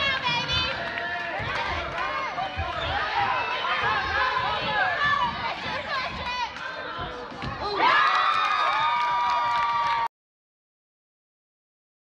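Spectators in a school gym shouting and calling out during a youth basketball game, with low thuds from play on the court beneath. About 8 s in the crowd swells louder with a held high note, and the sound cuts off abruptly about 10 s in.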